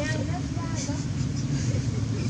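A steady low motor hum, with a few faint, short squeaky calls that rise and fall in the first half second.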